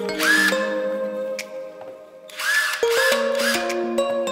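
Battery-powered cordless drill motor spinning up in short trigger bursts, each a whine that rises and then holds: one about a quarter second in, then three quick ones in the second half. Background music plays underneath.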